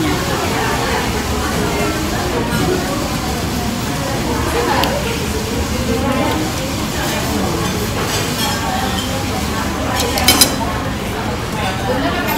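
Restaurant din: background diners' chatter with spoon and dish clinks, and a few sharp clinks about ten seconds in.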